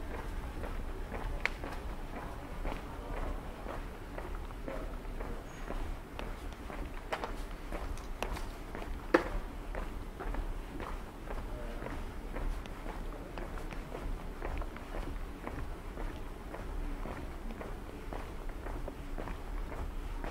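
Footsteps walking at a steady pace on a paved stone street, a continuous run of light steps, with one sharper click about nine seconds in.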